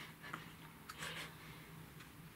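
Faint taps and a brief soft rustle as a game tile is set down on a board-game board, over a low steady hum.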